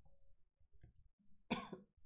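A man coughs once, a short, sudden cough near the end, after a second and a half of faint room tone.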